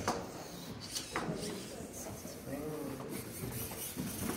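Indistinct background voices in a hall, with a sharp click at the start and another about a second in.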